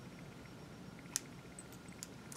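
A single sharp snip of hair-cutting scissors closing on wig hair about a second in, followed by a few faint ticks, over quiet room tone.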